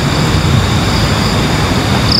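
Steady, unbroken rushing noise with a thin, continuous high drone of night insects over it.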